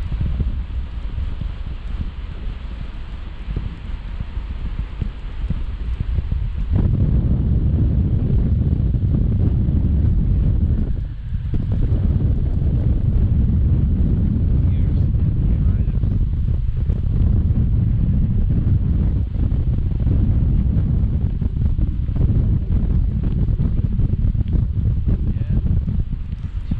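Wind rushing over an action camera's microphone in paraglider flight: a loud, low rumble that grows louder about seven seconds in and dips briefly just after eleven seconds.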